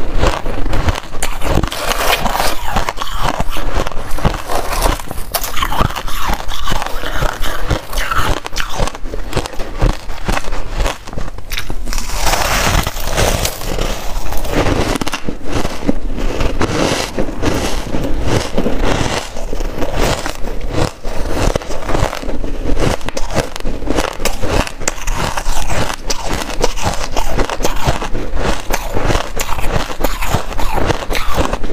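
Shaved ice being bitten and chewed close to a clip-on microphone: a dense, continuous run of crisp crunches and crackles.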